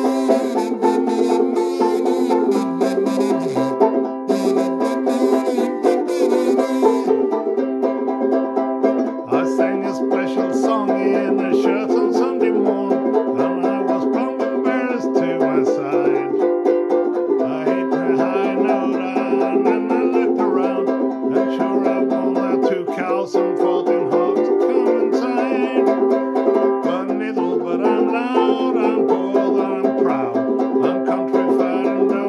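Banjo ukulele strummed in a steady rhythm while a harmonica in a neck rack plays the melody over it in sustained reedy chords: an instrumental break of an old-time country song.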